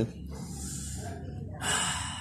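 A person's breath in a pause of talk: a soft breath out, then a stronger, sharper intake of breath near the end.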